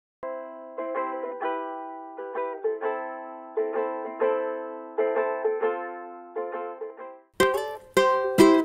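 Ukulele chords plucked and left to ring out one after another, dull-sounding with the treble cut off. About seven seconds in it gives way to brighter, louder playing on a Flight NUT 310 tenor ukulele.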